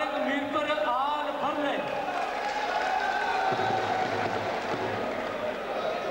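A man announcing in a foreign language into a handheld microphone over a public-address system, with crowd noise under it.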